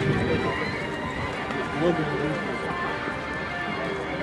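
Music playing steadily under the chatter and calls of people at the trackside, with a brief voice about two seconds in.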